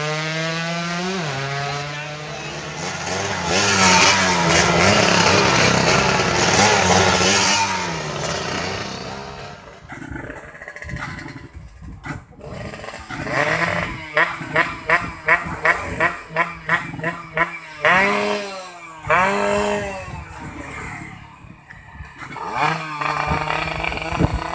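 Racing moped engine at high revs as the bike passes close by, loudest about four seconds in, then fading with falling pitch. After a break, an engine is blipped in short sharp bursts about three a second, then revved up and down a few times.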